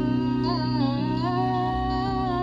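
A live street band playing: a wavering, held melody line over a steady low bass and guitar accompaniment.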